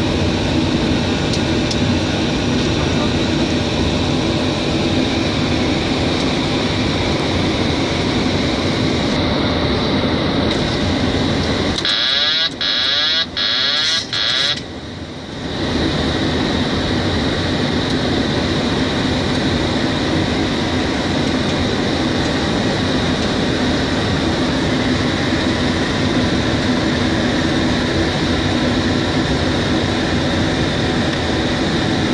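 Steady flight-deck noise of a Boeing 737 on approach: loud airflow and engine/air-conditioning noise with a constant hum and a steady high tone. About halfway through it briefly gives way, for roughly three seconds, to a quieter stretch with a strong high tone and a few short dropouts, then returns.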